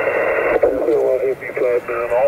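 A distant amateur station's voice coming back over single-sideband through a portable HF transceiver's speaker, thin and narrow-sounding, over steady band hiss.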